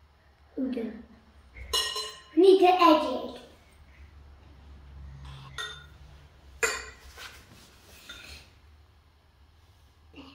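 Metal spoon clinking against a glass mixing bowl a few times, the sharpest ring about two seconds in and another near seven seconds, with a child's voice in between.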